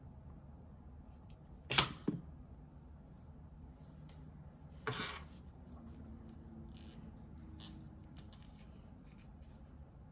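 Soft handling noise of hair and a foam flexirod being wound, with two sharp clicks, about two and five seconds in, and a few fainter ticks.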